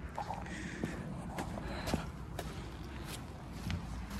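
Footsteps and light scuffs on a concrete slab: a scatter of short, irregular ticks over a low steady outdoor background.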